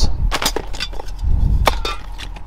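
Metal hand tools and spray cans clinking and knocking together as they are rummaged through in a pile: a string of sharp, separate clinks with a duller knock near the middle.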